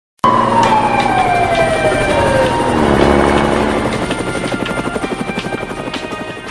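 A helicopter sound effect starts suddenly, with its rotor beating steadily and a tone gliding down in pitch over the first two seconds or so, then slowly fading.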